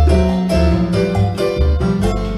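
Live band playing: an electronic keyboard with a piano sound over plucked upright double bass, whose low notes change about every half second.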